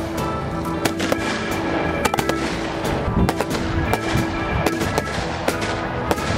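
A boxed firework cake firing a series of shots, with irregular sharp bangs and crackles, over background music with held notes.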